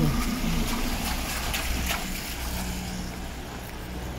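Wet-street traffic: a steady low rumble with the hiss of tyres on wet road, and a few faint knocks.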